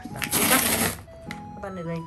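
Packing tape being peeled off a cardboard shipping box, a loud ripping stretch lasting about a second.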